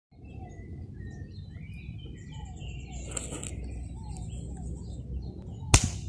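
Birds chirping and calling in short, scattered notes among trees over a steady low rumble, with one sharp click shortly before the end.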